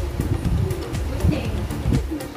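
Low cooing of a pigeon over background music, with light clicks.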